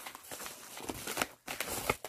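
Rustling of a mail package being handled and opened, with short sharp crackles about a second in and again near the end.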